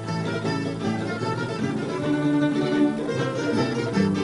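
Folk string band of guitars and Spanish lutes playing an instrumental interlude of quick plucked notes, with no voice.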